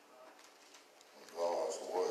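A man's low voice, heard briefly over quiet room tone, starting about one and a half seconds in.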